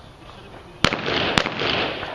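Two pistol shots about half a second apart, a little under a second in, each followed by a ringing, echoing tail.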